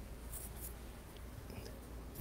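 Toothbrush bristles scrubbing a tiny soldered circuit board with alcohol to clean off solder flux, a faint, light scratching in short strokes.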